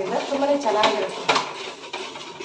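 A metal spoon stirring in a large stainless steel cooking pot, scraping and knocking against the pot with a few sharp clinks.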